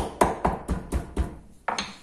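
A wooden meat mallet pounding a thin pork loin fillet flat on a wooden cutting board: quick, regular thuds about four a second, stopping a little past the middle, then one last strike near the end.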